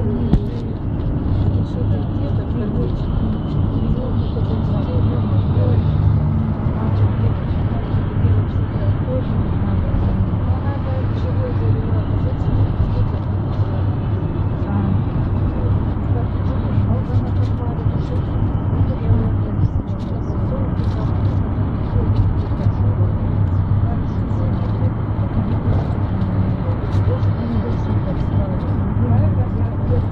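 City bus in motion heard from inside the cabin: a steady low engine drone with road noise, and indistinct passenger voices underneath.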